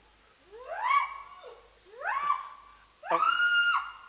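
A high voice crying out three times, each cry sliding upward in pitch and then held briefly. The third cry is the loudest and starts abruptly about three seconds in.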